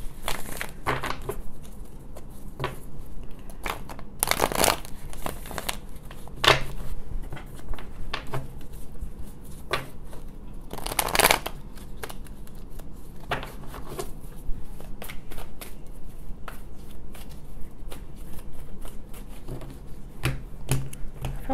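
A tarot deck shuffled by hand over a wooden table: a continuous run of soft card flicks and slides, with louder riffling sweeps about four and a half and eleven seconds in.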